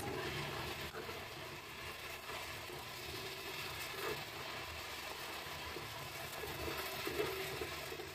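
Diced pork sizzling as it is sautéed and stirred with a spatula in a pan, over a steady low hum.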